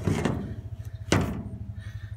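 A single sharp knock about a second in, over a steady low rumble.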